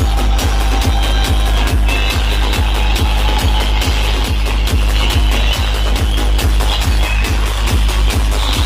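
Loud electronic dance music played through a truck-mounted DJ speaker rig during a sound test. It has a heavy, continuous deep bass and a regular kick-drum beat.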